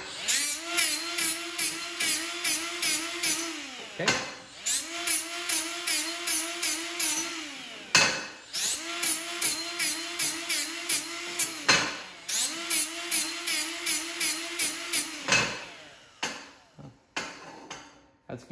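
Die grinder taking mill scale off the corners of steel tubing, run in four bursts of about four seconds. Each time the motor spins up, holds and winds down, with a grinding pulse of about three strokes a second.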